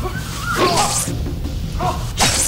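Film comedy soundtrack: background music with a swishing whoosh sound effect about half a second in.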